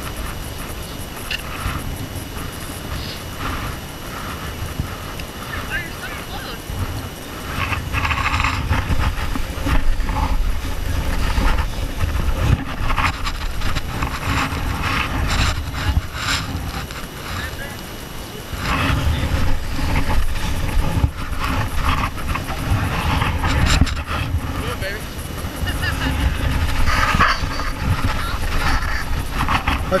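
Wind buffeting an action camera's microphone as a low, uneven rumble that grows stronger about eight seconds in. Indistinct voices of people nearby come through over it.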